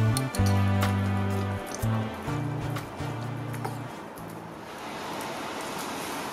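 Background music of held bass notes with light plucks, which fades out about four seconds in. Then a steady splashing hiss of water being poured from a glass into a blender jar of curry-paste ingredients.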